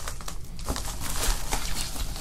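Anti-static shielding bag crinkling and rustling as a graphics card is slid out of it, a run of small crackles.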